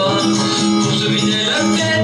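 A man singing a French pop song over a backing track with guitar, the notes held and flowing without a break.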